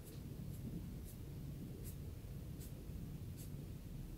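Fingertips rubbing over a shaved scalp during a Thai head massage: faint, soft scratchy strokes a little more than once a second, over a low background rumble.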